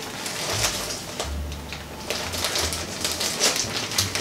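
Plastic packaging bag crinkling and rustling as it is opened by hand, with irregular crackles throughout.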